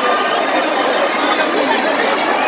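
Loud crowd chatter: many voices talking at once in a large hall.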